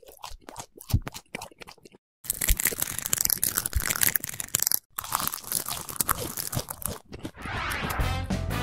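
Crunching sounds like food being bitten and chewed, ASMR-style: a few scattered clicks at first, then about five seconds of dense crunching with a brief break in the middle. Music starts to come in near the end.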